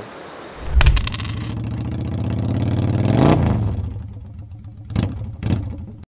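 A motorcycle engine starting with a sudden burst, then running and swelling to a peak about three seconds in before fading, followed by two short bursts near the end.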